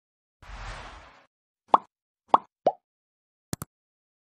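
Subscribe-button animation sound effects: a short whoosh, then three quick pops, the last one lower, and a double mouse click near the end.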